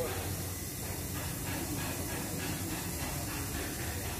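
Steady low hum under a faint hiss, with faint, indistinct voices in the background.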